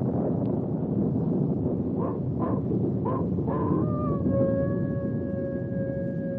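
Radio drama sound effects: a steady rushing noise with four short animal cries about two to three and a half seconds in, then one long, steady, held animal call from about four seconds.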